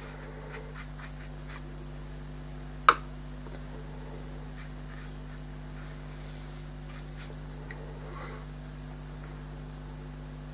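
Faint scratching of a watercolour brush stroking over textured paper, against a steady low electrical hum, with one sharp click about three seconds in.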